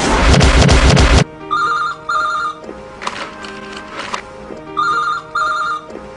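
A loud, noisy passage cuts off suddenly about a second in. Then a desk telephone rings twice, each time as a pair of short rings (the British double ring), over soft background music.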